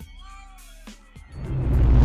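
Intro music with a short meow-like gliding call, then a whoosh that swells and peaks with a low boom at the end, a transition sound effect.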